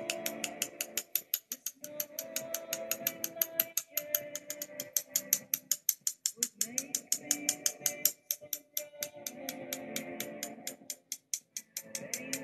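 Background music: a steady fast ticking beat, about five or six strikes a second, over sustained chords.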